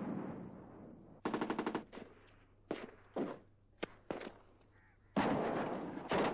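Gunfire. About a second in comes a short rapid burst of automatic fire, then several single shots, and near the end a heavier blast that rings on for about a second.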